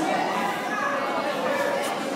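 Crowd chatter: many voices talking over each other in a large hall.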